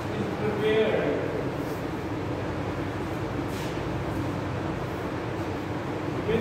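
Steady hum of room noise, with a brief murmur from a man's voice about a second in.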